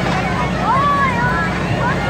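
Children's voices chattering and calling out over one another, with one longer call about a second in, over a steady low mechanical hum.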